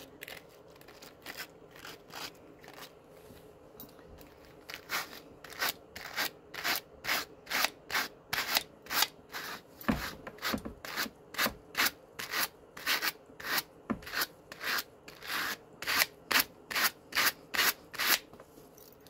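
Two hand carders with fine wire teeth being combed against each other through Malamute fur: scratchy brushing strokes, faint at first, then a steady rhythm of about two strokes a second from about five seconds in.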